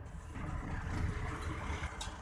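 Low, steady rumble of a car's tyres and engine on the road while driving, heard from inside the car.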